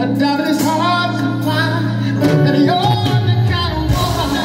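Live neo-soul band: a lead vocalist singing a melody over electric guitar, bass and drums, heard from among the audience.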